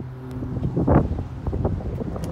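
Wind buffeting a handheld phone's microphone, with rustling handling noise as the phone is carried out of the car; the gusts come in irregularly and are loudest about a second in. A low steady hum fades out in the first half second.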